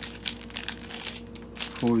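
Clear plastic packaging bag crinkling as it is handled, an irregular run of small crackles.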